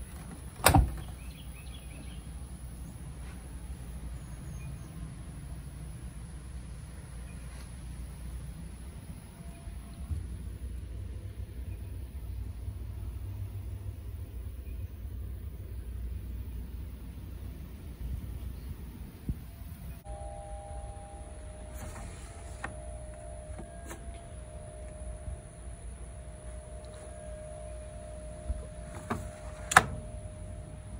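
The door latch of a GE front-load washer/dryer combo clicking open about a second in, over a steady low rumble of background noise. A second sharp click comes near the end.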